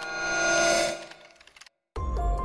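A metallic ringing sound effect that swells up and dies away within about a second and a half, followed by a brief moment of complete silence.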